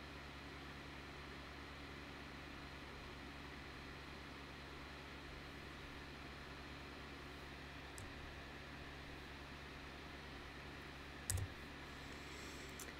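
Quiet room tone with a steady low hum, broken by a faint click about eight seconds in and a sharper click near the end.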